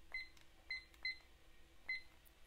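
Digital timer beeping as its buttons are pressed: four short, high-pitched beeps at uneven intervals, each with a small click.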